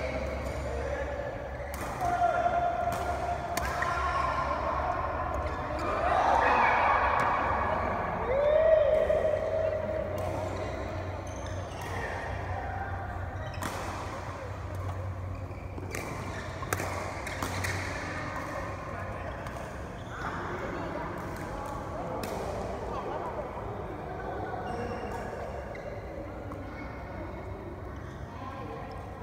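Doubles badminton rally: rackets hitting the shuttlecock in sharp, irregular cracks, with players' voices around them.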